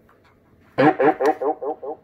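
A short "ew" spoken into the microphone comes back through the Ranger RCI-69FFB4 CB radio's built-in echo. After a brief quiet the word repeats about six or seven times a second, each repeat fainter, trailing away.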